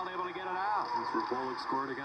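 Broadcast commentator talking, heard from a television's speaker.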